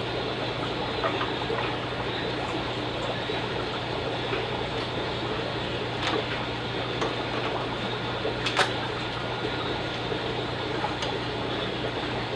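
Steady running-water noise from the aquarium setup over a low constant hum, with a faint knock about six seconds in and a slightly louder one at eight and a half seconds.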